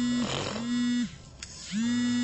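A man's voice holding long, steady hums at one pitch, one after another with a short pause near the middle, between spoken phrases.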